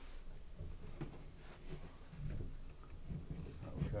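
Soft, irregular low knocks and rubbing from hands working at the wooden lower cover of an upright piano, pressing its spring clips to release it, with a few faint clicks.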